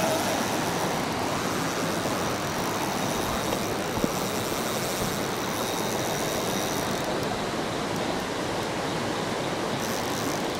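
Steady rushing of creek water pouring over a rapid, an even noise without a break. A small click about four seconds in.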